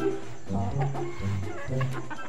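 Chickens clucking over background music with a steady, repeating bass line.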